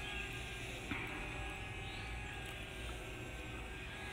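Faint steady whine of a DJI Mavic Mini's propellers as the drone climbs almost straight overhead, with one small click about a second in.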